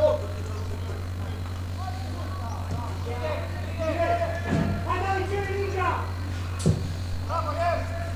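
Voices calling and shouting out across an outdoor football pitch, over a steady low electrical hum. A single sharp thump comes late on.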